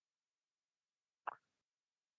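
Near silence, broken once about a second and a quarter in by a single brief, soft sound.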